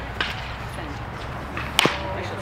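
A single sharp, loud crack near the end as a pitched baseball arrives at home plate, with a smaller click shortly after the start.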